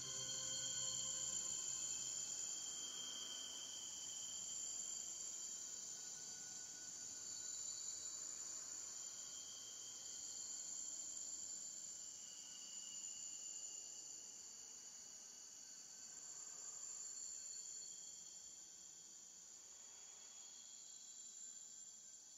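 Steady, high-pitched chorus of insects such as crickets, as the last low notes of music die away in the first couple of seconds. The chorus slowly grows fainter toward the end.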